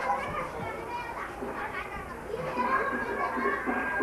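Many voices, children's among them, talking and calling over one another at once.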